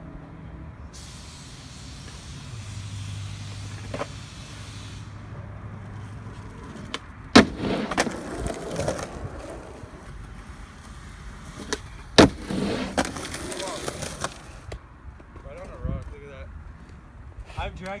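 Skateboard on concrete: two sharp cracks of the board, about seven and twelve seconds in, each followed by a couple of seconds of wheels rolling. Before them comes a steady rushing noise with a low hum, and short voices near the end.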